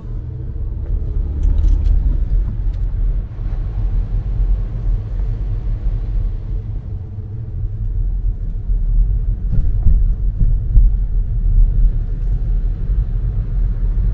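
Car driving, heard from inside the cabin: a steady low rumble of engine and road noise, with no speech.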